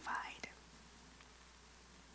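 A woman's breathy exhale, trailing off within the first half-second, then near silence with faint room tone.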